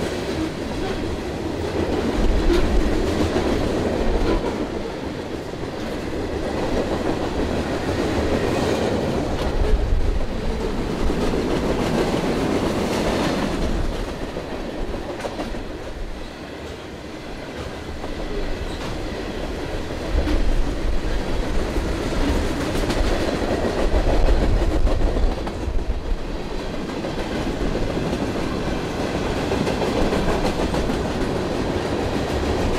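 Train cars rolling past on the track: a continuous rolling rumble and clatter whose loudness swells and eases several times.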